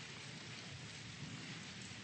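Faint, steady rustle of many people turning the thin pages of their Bibles at once.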